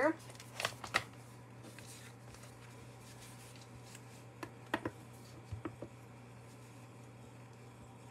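Light handling sounds of paper and a clear acrylic stamp block on a craft mat: a few soft taps and rustles, about a second in and again around the middle, over a steady low hum.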